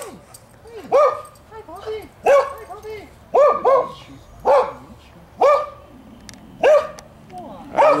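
A dog barking repeatedly: about seven short barks roughly a second apart, two of them in quick succession, with fainter, lower yips between.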